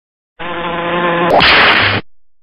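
Logo-card sound effect: a buzzing tone starts about half a second in, then rises in pitch into a louder hissing burst that cuts off sharply at the end.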